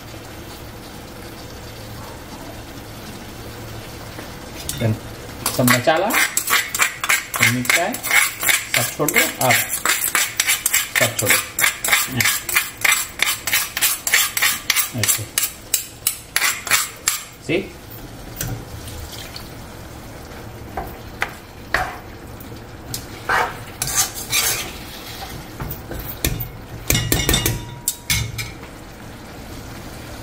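A metal ladle stirring and scraping goat curry in a wok, quick even strokes for about ten seconds from a few seconds in, then a few scattered clinks, over the low sizzle of the curry frying.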